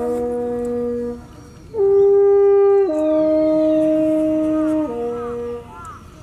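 Horn played in long held notes, stepping down and up between a few pitches, with two short breaks for breath: the horn call that summons Nara's deer to be fed.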